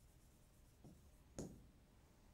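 Very quiet marker strokes on a writing board, with a soft tick just under a second in and a sharper tap about a second and a half in.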